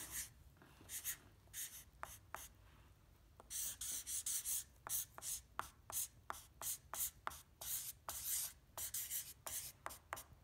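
Sharpie permanent marker writing letters on a sheet of paper in many short strokes. There is a brief pause about two and a half seconds in, then a quicker run of strokes.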